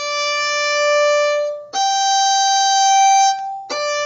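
Violin playing three long bowed notes, each held without a break: a D, up to a higher G held about two seconds, then back down to the D.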